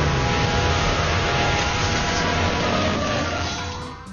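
Cartoon action soundtrack: a dense, steady rush of sound effects with a few held musical tones underneath, fading out near the end.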